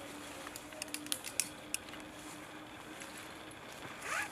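Rope and gear being handled at a tree trunk: several sharp light clicks and rustles in the first two seconds, over a faint steady low hum that fades out near the end.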